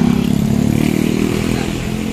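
A motorcycle engine running close by, a low steady hum that swells in the first second and a half and then eases off.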